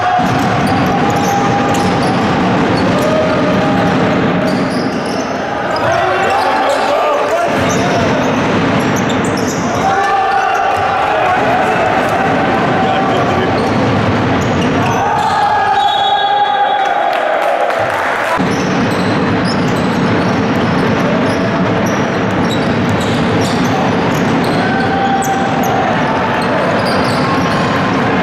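Live game sound in a large hall: a basketball dribbling on the wooden court under continuous voices from the players and the stands.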